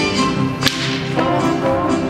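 Mariachi-style music with violins, over dancers' sharp footwork strikes on the stage. One loud crack comes about two-thirds of a second in.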